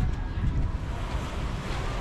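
Wind buffeting the microphone outdoors: a steady low rushing rumble with no distinct events.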